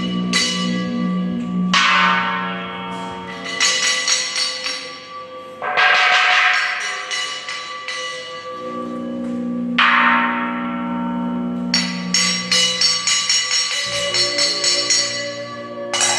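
Hand-cast bronze bells struck three times, each strike ringing out with a long decay, then a quick flurry of lighter clinking strikes near the end. A steady low tone sounds beneath them throughout.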